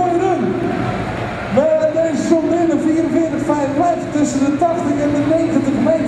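A man talking over the arena loudspeakers, with a pulling tractor's engine running steadily underneath.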